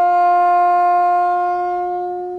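Solo bassoon holding one long, steady note that starts to fade near the end.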